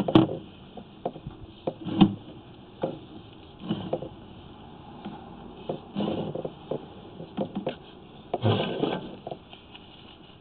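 Irregular knocks and scrapes as a sewer inspection camera is pushed down a main drain line. There are sharp knocks at the start and about two seconds in, and a longer scraping rustle near the end.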